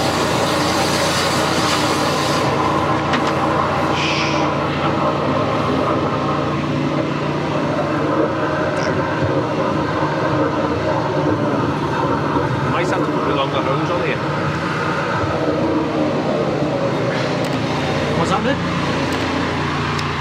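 Drain jetter's engine running steadily while its high-pressure hose works in the sewer pipe, with water running through the manhole channel.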